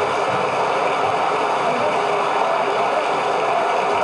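Audience applause on a vintage vinyl record, filling the gap after the singing ends, with a faint held note underneath.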